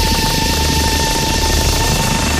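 Instrumental passage of an electronic trance track with no vocals: a steady high synth note over a held bass and a hissing noise layer.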